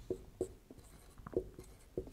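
Marker pen writing on a whiteboard: a handful of short, faint strokes and taps as letters are written.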